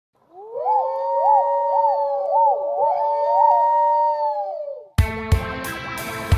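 Intro music: an eerie held electronic tone with repeated rising-and-falling swoops over it, ending about five seconds in, when electric guitar music with drum hits starts abruptly.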